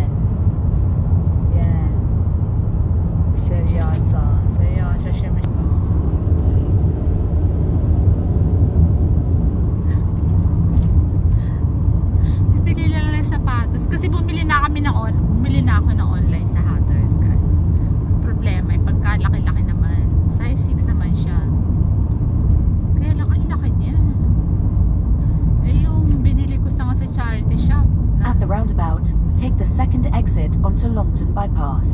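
Steady low rumble of a car driving, heard inside the cabin: engine and road noise at an even level. A woman's voice speaks briefly over it, mostly about halfway through and near the end.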